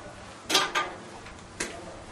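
Three sharp clicks of a whiteboard marker against the whiteboard, two in quick succession about half a second in and a single one about a second later.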